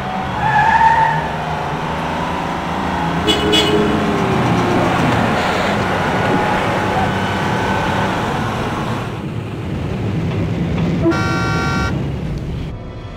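Busy street traffic, with vehicle engines running steadily and a car horn honking briefly about half a second in. A short high tone sounds a little after three seconds, and another pitched tone starts near the end.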